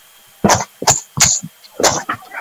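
A person coughing, about four short sharp coughs starting about half a second in, heard over a video call's audio.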